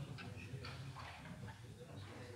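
Faint, irregular ticking clicks over a low, steady hum.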